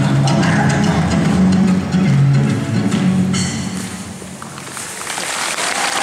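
Recorded show music with percussion playing loudly, then ending about three seconds in and dying away. Audience applause starts to build near the end.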